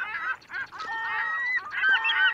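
Bird calls: a string of short calls that bend up and down in pitch, then one longer held call about a second in, and more short calls near the end.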